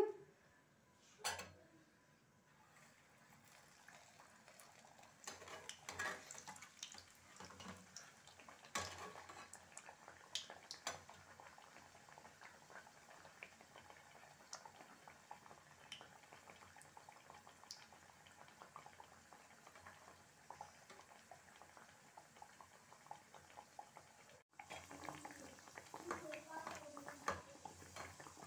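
Aloo kachori deep-frying in hot oil in a kadai on a lowered flame: a faint, steady sizzle with scattered crackles, and a few light clicks of the spatula or pan.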